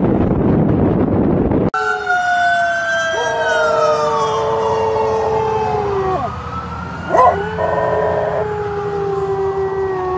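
Wind rushing on the microphone, then a Weimaraner howling: long, wavering howls that slide slowly down in pitch, with a brief sharp sound about seven seconds in.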